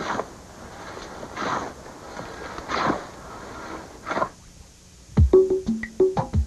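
Four rustling swishes about a second and a half apart as a long-handled tool is worked through cut weeds. Near the end, louder, a short music jingle of quick knocking percussion with pitched tones begins.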